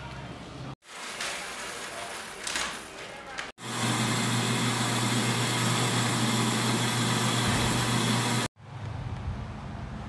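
Bulk coffee grinder running steadily for about five seconds, a loud even grinding noise over a low motor hum, as it grinds beans into a paper bag; it cuts off abruptly. Before it, quieter café room noise.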